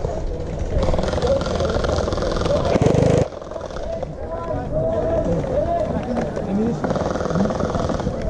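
Distant voices calling and shouting across an open field, too far off to make out words, over a steady low rumble. A louder burst of noise fills the stretch from about one to three seconds in.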